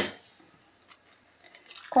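A single sharp clink against a ceramic mixing bowl at the start, ringing briefly, then only a few faint small ticks.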